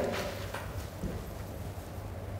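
Quiet room tone with a steady low hum and a few faint soft knocks, about three in the first second or so.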